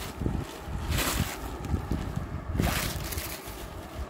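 Rustling of saree fabric being handled and moved about, in two swells about a second in and near three seconds, over low handling bumps and rumble on the phone's microphone.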